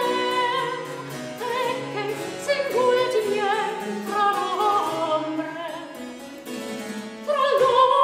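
Soprano singing an early Baroque Italian song with vibrato, accompanied by harpsichord. The voice drops back for a moment and comes in again loudly near the end.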